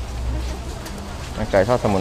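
Busy outdoor market background, a low rumble with faint distant chatter, then a man's voice speaking close and loud about one and a half seconds in.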